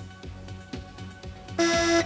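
Quiet game-show background music with a steady beat, then about one and a half seconds in an electronic contestant's buzzer sounds one steady tone for under half a second as a player buzzes in to answer.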